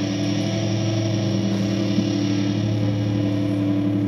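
Live band holding one sustained, droning chord, with electric guitar ringing through effects; the sound stays steady without new notes.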